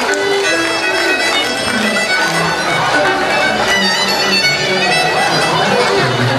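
Fiddle music, a steady run of short, quick notes, playing a dance tune.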